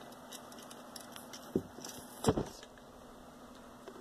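Faint handling of plastic action figures: light rattling, with two short knocks a little past the middle.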